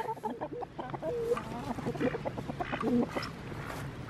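A flock of hens clucking, many short overlapping calls as they peck at scattered feed.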